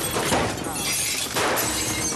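Glass liquor bottles shattering and crashing to the floor.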